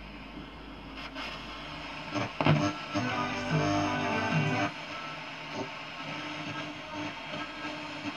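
Schaub-Lorenz Touring 30 transistor radio being tuned across the FM band: noise between stations, with a louder stretch of music from a station about two seconds in that drops away just before five seconds as the dial moves on.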